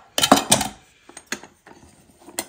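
Aluminium mess tin and its wire handle clinking and clattering as they are handled, with a cluster of metallic knocks at the start and a few lighter taps after.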